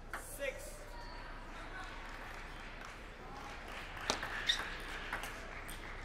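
Table tennis ball being struck back and forth in a rally: sharp clicks of the celluloid ball on rackets and table, the loudest about four seconds in and then every half second or so. They are heard over the steady hiss of a large hall.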